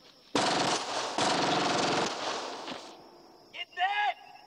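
Film soundtrack gunfire: a loud burst of rapid automatic fire that starts suddenly, breaks briefly about a second in, resumes and fades away. A short burst of voice follows near the end.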